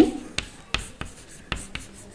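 Chalk writing on a blackboard: several sharp taps and faint scratches as the strokes of a word are written.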